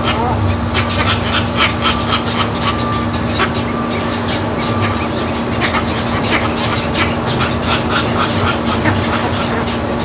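Outdoor swamp ambience: many short bird calls and clicks in quick succession over a steady low hum.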